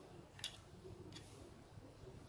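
Near silence: room tone with two faint light clicks, about half a second and just over a second in, from a plug and wires being handled.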